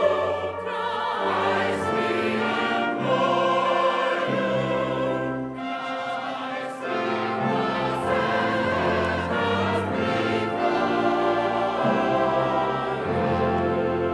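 A processional hymn sung by many voices in a large church, held notes changing about every second, with instruments accompanying.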